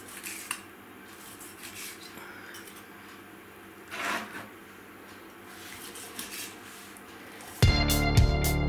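Knife slicing through a grilled steak on a wooden cutting board: quiet cutting with a few light knocks of the blade on the board, the clearest about four seconds in. Loud music starts suddenly near the end.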